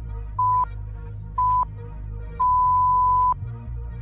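Interval timer countdown beeps: two short beeps about a second apart, then one long beep, marking the end of a work interval. They play over background music with a steady beat.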